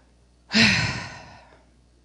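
A woman's single audible sigh close into a handheld microphone: a breathy outrush with a low falling voice in it, starting about half a second in and fading away over about a second.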